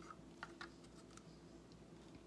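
A few faint, light clicks of a paint stir stick scraping and tapping against a small plastic cup as the last of the acrylic paint is scraped out into a pour cup.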